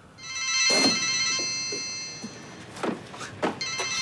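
Mobile phone ringtone: a chord of high electronic tones rings for about two and a half seconds, stops, then starts again shortly before the end. A few dull thuds sound over it.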